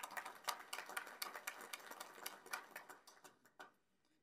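A small audience applauding: many quick, uneven hand claps that thin out and stop shortly before the end.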